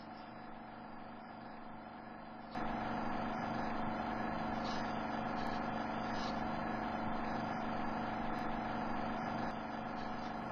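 Steady background hiss with a low electrical hum, stepping up in level about two and a half seconds in and then holding steady, with a faint tick or two.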